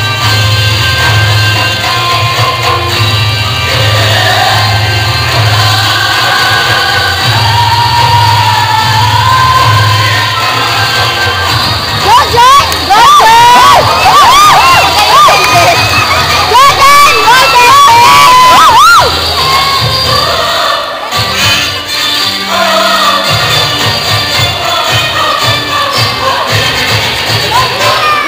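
Indian dance song playing loudly over a hall sound system with a steady beat. A crowd of students cheers over it, with loud high-pitched shrieks and whoops from about twelve to nineteen seconds in.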